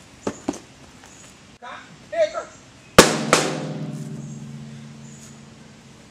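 Two sharp hits about a third of a second apart, the first very loud and ringing on, fading away over about three seconds. A couple of light knocks and a brief voice come before them.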